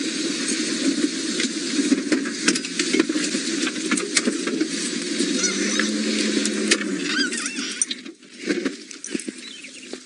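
Open safari vehicle creeping off-road through long grass, its engine running while grass and twigs brush and snap against the body in a stream of clicks. The noise drops away about eight seconds in.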